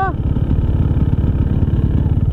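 KTM EXC 300 two-stroke single-cylinder dirt bike engine idling with a steady, rapid pulse.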